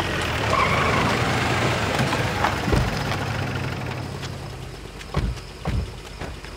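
An SUV and a jeep driving on a dirt road, engines running with a broad rush of tyre and road noise. The engine sound fades out about three-quarters of the way through as the vehicles stop, followed by two low thumps near the end.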